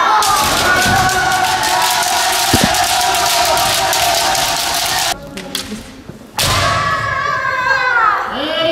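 Kendo practice on a wooden gym floor: a dense clatter of bamboo shinai strikes and stamping footwork under long, overlapping kiai shouts from many players. The din dips briefly about five seconds in, then a shout rises again.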